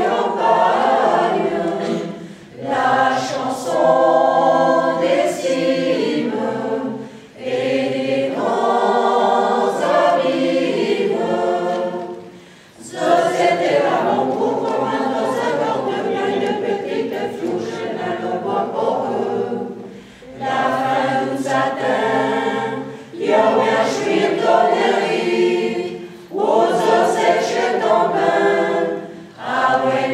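A choir singing a cappella, in sung phrases of a few seconds broken by short pauses for breath.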